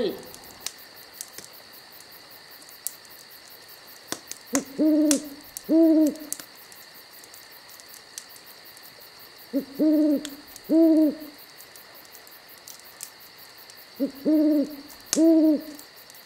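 An owl hooting in three paired bursts a few seconds apart. Each pair opens with a short note, and each hoot rises and then falls in pitch. A steady high-pitched ringing runs underneath.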